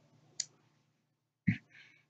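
Two short clicks in a quiet room: a faint one about half a second in and a louder one about a second and a half in, followed by a brief faint hiss.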